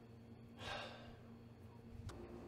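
A man lets out a single heavy sigh about half a second in, a short breathy exhale that fades away, over a faint steady room hum.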